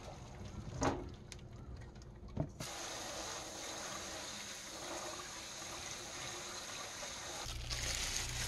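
Tap water running steadily onto soybean sprouts in a stainless steel colander in a steel sink, starting about two and a half seconds in. Before it come two sharp knocks as the sprouts are tipped from a pot into the colander.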